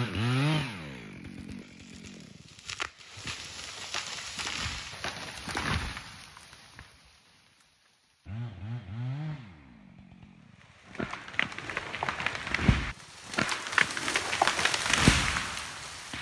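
A chainsaw revving as it finishes a felling cut, then the tree cracking and crashing down through the branches. After a brief break about halfway, the chainsaw revs again and is followed by a second crash of a falling tree.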